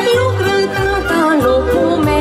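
A young woman singing a Romanian folk song through a microphone, with ornamented, sliding vocal lines over amplified accompaniment with a steady bass beat.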